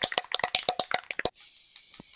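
Aerosol can of Elmer's spray adhesive being shaken, its mixing ball rattling rapidly, then a steady hiss of spray starting about a second and a half in.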